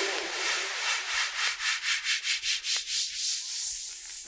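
Hard trance breakdown: the kick drum and bass drop out, leaving a high, hissing noise sound that pulses in a fast, even rhythm, about four to five pulses a second.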